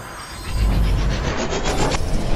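Sound-design effects of a channel logo sting: a deep bass rumble comes in about half a second in, under a noisy swoosh that rises and flutters rapidly.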